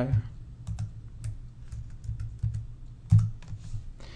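A dozen or so light, irregular clicks from a computer keyboard and mouse while the software is worked, the loudest about three seconds in, over a low steady hum.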